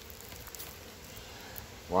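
Honey bees humming faintly and steadily around an opened hive, with a few faint clicks about halfway through.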